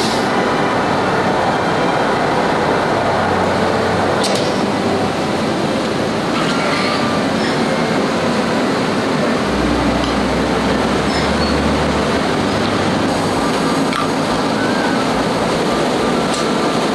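Steady machinery noise of a garment factory's pressing room, from steam presses and finishing machines running, with a sharp click about four seconds in and a low hum that comes and goes.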